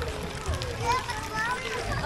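Background voices of people in a busy swimming pool, children among them, heard faintly over a steady low noise.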